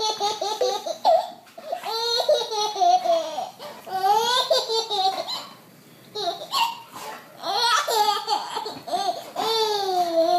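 A baby laughing in a string of high-pitched bursts, with a short lull about six seconds in.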